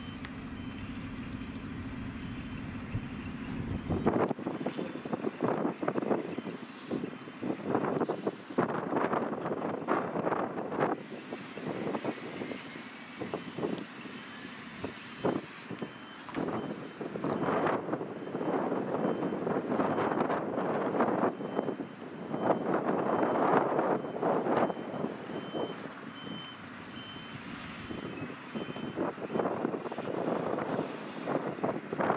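Open coal wagons rolling slowly past during shunting: irregular clattering and rattling of wheels over rail joints and of the wagon bodies, and a faint thin squeal running through the middle of it. A steady low hum is heard for the first few seconds before the clatter begins.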